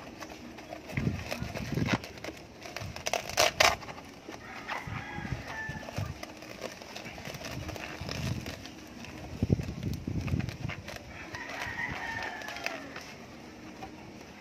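A rooster crowing in the background, about five seconds in and again more fully near the end, over close handling noise of a fabric shock cover being wrapped and fastened on a scooter's rear shock absorber. The handling noise is irregular knocks and rustles, with a sharp rasping burst about three and a half seconds in as the loudest moment.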